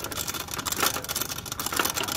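Rapid, dense clicking from a mountain bike's drivetrain, the rear wheel lifted off the ground and turned over while the gears are being shifted.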